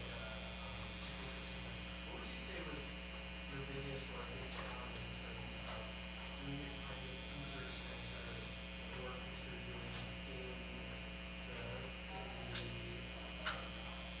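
Steady electrical mains hum on the sound feed, with faint, distant speech beneath it: an audience member asking a question away from the microphone. A sharp click sounds near the end.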